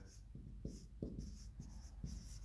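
Marker pen writing on a whiteboard: a series of short, faint strokes and scratches as a word is written out.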